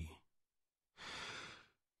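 A male narrator's single short intake of breath about a second in, during a pause between sentences of a spoken reading.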